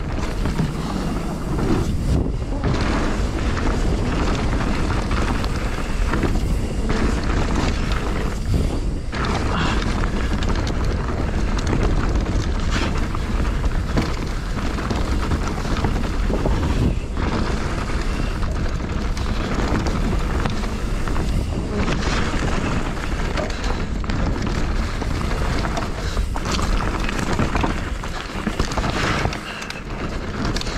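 Wind buffeting a camera microphone as a mountain bike descends rough trail, with a steady low rumble and the rattles and knocks of the bike and tyres over the ground.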